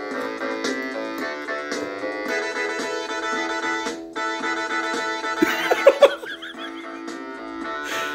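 Yamaha PortaSound PSS-190 electronic keyboard playing its built-in demo song: a melody over chords and rhythm, with a brief break about halfway through.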